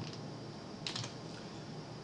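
Computer keyboard keystrokes pressing Ctrl+C to copy a selected range: a single click at the start, then a quick pair of clicks about a second in, with a faint click after.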